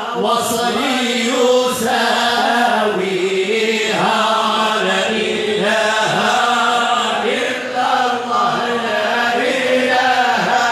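Group of men chanting Moroccan amdah nabawiya, devotional praise of the Prophet, together in long sustained lines that rise and fall.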